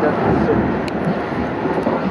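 Hamburg Hochbahn elevated metro train running as it pulls out of a station, heard from inside the carriage: a steady rumble of wheels and motors with a couple of light clicks.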